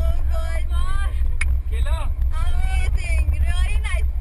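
Car running inside the cabin: a steady low rumble of engine and road noise, with a woman talking over it.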